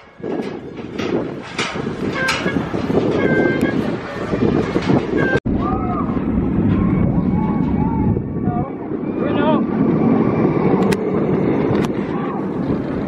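Steel hyper coaster train (Mako) running along its track: a steady rushing rumble. A brief break about five seconds in joins two passes.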